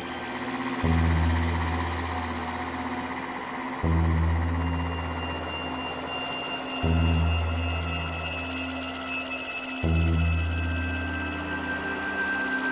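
Ambient electronic music on software synthesizers (Cherry Audio Elka-X and PS-3300): a deep bass note starts about every three seconds, four times, under sustained pad tones. A thin, high held tone comes in about halfway through.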